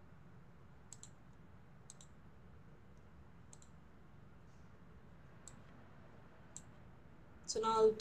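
Faint single computer-mouse clicks, about five of them spaced a second or two apart.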